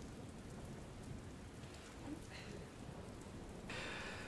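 Faint, steady hiss of background ambience with no speech, rising a little near the end.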